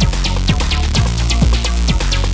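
Old-school house/rave dance music from a DJ mix: a steady kick drum about twice a second over a constant deep bass, with rapid hi-hats on top.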